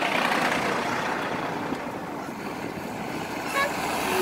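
Steady vehicle and road noise passing close by a dump truck, swelling as the truck comes alongside and then holding level.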